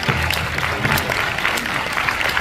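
Audience applauding, a dense patter of many hands clapping at once.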